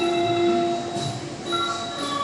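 Thai traditional ensemble music accompanying a classical dance: a melody of long held notes stepping from one pitch to the next, over a regular soft low drum beat.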